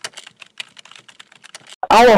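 Computer keyboard typing: a quick, irregular run of key clicks as text is typed into a search bar. Just before the end, a loud sudden sound with a sliding pitch cuts in.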